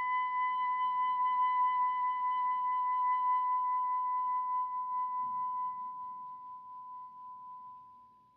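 Soprano saxophone holding one long high note, the closing note of the piece, which fades slowly away to nothing near the end.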